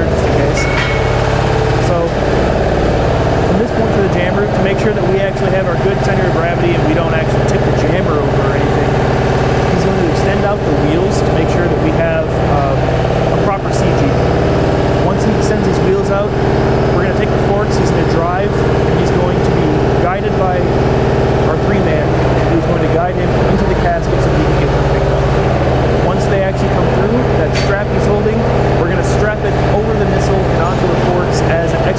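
Munitions lift truck ('jammer') engine running loudly and steadily, a constant low hum.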